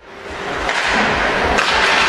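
Ice hockey rink sound during play: skates on the ice and sticks striking the puck, with arena ambience, fading in from silence over the first half second. A sharper knock comes about a second and a half in.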